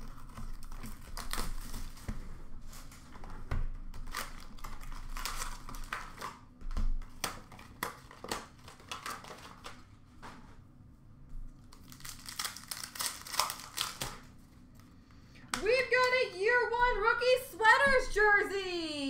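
Foil hockey card pack wrappers being torn open and crinkled, with cards shuffled in hand, in crackling bursts with short pauses. For the last few seconds a high, wavering voice-like sound joins in.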